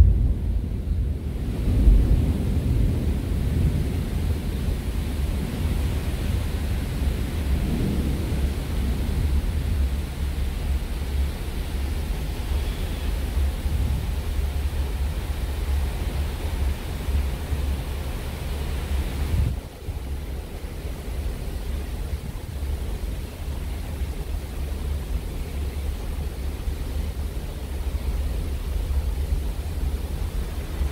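Wind buffeting the microphone as a steady low rumble, over the wash of the sea along a ship's side; the rumble drops away briefly about two-thirds of the way through.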